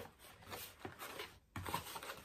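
Faint rustling and scraping of a cardboard box and a paper instruction sheet being handled as the sheet is tucked into the box, with a few light clicks.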